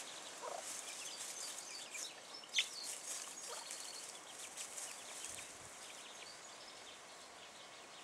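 Chicks peeping in quick, high chirps, with one louder, falling peep about two and a half seconds in, while the hen gives a couple of low clucks.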